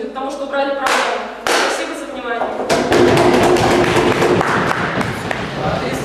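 A woman's voice ends early on, then the room applauds: a dense patter of many hits that starts about a second in and is loudest from about three seconds in.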